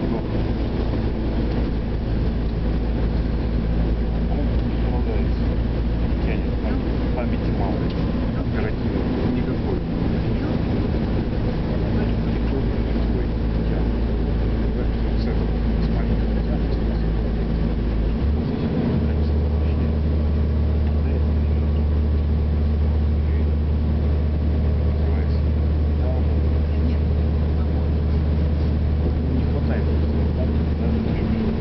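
Engine and road noise of a moving vehicle heard from inside its cabin: a steady low drone whose pitch shifts about two-thirds of the way through.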